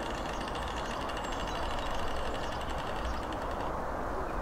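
Steady low background rumble, with a fast, high-pitched rattle of evenly spaced clicks that stops shortly before the end.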